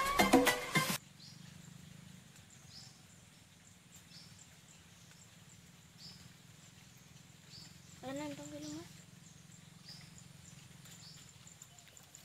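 Music that cuts off about a second in, then faint outdoor quiet with a short, high, falling chirp repeated about once a second, like a small bird calling. A brief pitched voice sound comes about eight seconds in.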